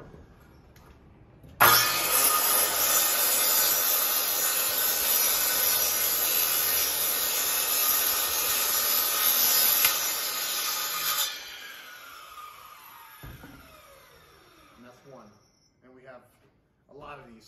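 Circular saw starting abruptly about two seconds in and cutting steadily through vinyl soffit panels for about nine seconds. After it is released, the blade spins down with a falling whine.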